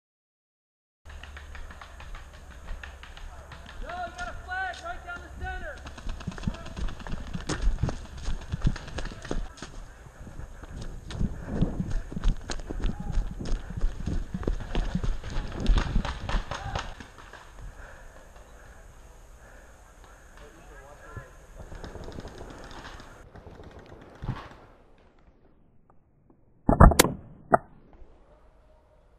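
Rapid footsteps of a player running across dry pine-needle ground, with voices shouting in the background. Near the end comes a short, loud burst of shots from an Empire EMF100 magfed paintball marker.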